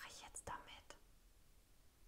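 Near silence, with a few faint, short whispered sounds in the first second.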